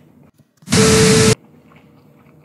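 A loud burst of static-like hiss with one steady tone in it, starting and stopping abruptly and lasting about two-thirds of a second. It comes right after a brief drop to near silence.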